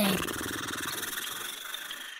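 Cartoon sound effect of sleeping tigers snoring: a fluttering rumble that fades away over a couple of seconds.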